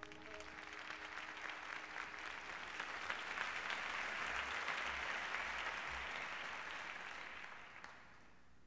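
Live audience applauding as the piece ends, the last held note dying away in the first moment. The applause swells to a peak midway, then fades out.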